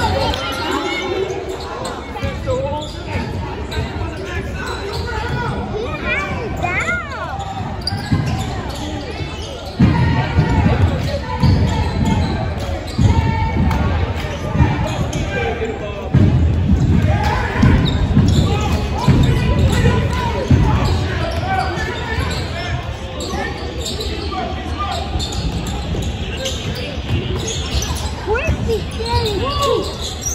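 A basketball dribbling on a hardwood gym floor, with repeated thumps that come thickest through the middle, over spectators talking in a large, echoing gym.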